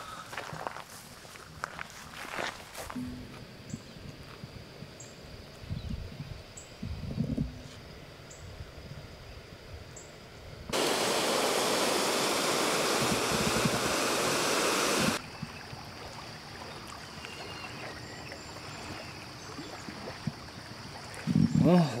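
Water rushing and pouring through a concrete dam outlet channel, a loud, even roar that cuts in sharply for about four seconds in the middle. Before and after it there is only quiet outdoor ambience with a few light knocks.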